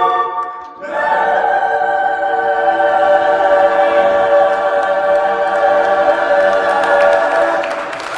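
Mixed-voice choir singing a cappella in a spiritual arrangement. A chord is cut off with a brief break, then a long final chord is held for about seven seconds and fades near the end.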